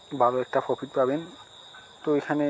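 A man talking in short phrases, over a faint steady high-pitched tone that runs underneath.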